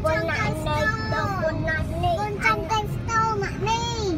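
A child singing a tune in held, gliding notes with short breaks, over the low steady rumble of traffic.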